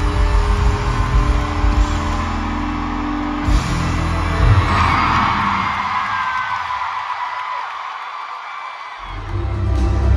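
Loud live pop-rock music from a concert. The heavy bass drops out for a few seconds in the second half, leaving only the higher parts, then comes back in full about nine seconds in.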